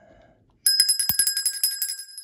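An edited-in bell sound effect for the subscribe-bell prompt: a bell trills with a fast run of strikes, like a bicycle or telephone bell. It starts about half a second in and lasts about a second and a half.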